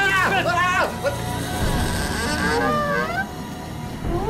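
Excited, wordless cries from two men, then a low rumble with a high hiss and a few rising electronic warbles, a sci-fi sound effect for an alien arrival.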